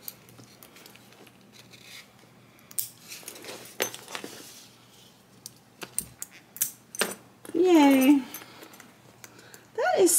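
Small metal clicks and clinks of swivel snap hooks on a webbing strap being handled and clipped onto a bag's metal rings. A brief voiced sound comes in about three quarters of the way through.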